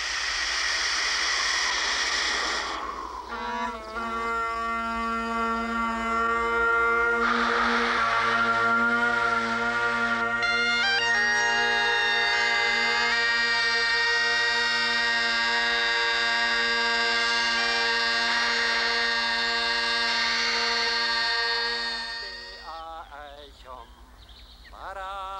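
A loud rush of air for about three seconds as the bagpipe bag is blown up, then Great Highland bagpipes strike in: the drones hold a steady low note under the chanter's tune for nearly twenty seconds. Near the end the sound wavers and bends and dies away as the pipes run out of air.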